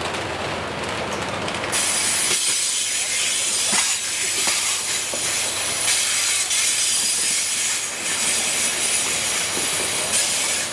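Amtrak Superliner passenger cars rolling past and away as the train leaves the station, their low rumble fading as the last car clears. A steady high hiss comes in suddenly about two seconds in and carries on.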